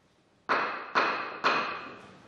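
Three sharp knocks, evenly spaced about half a second apart, each with a ringing tone that dies away in the chamber's reverberation.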